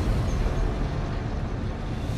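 A heavy industrial gate door lifting open: a steady, low mechanical rumble that starts abruptly.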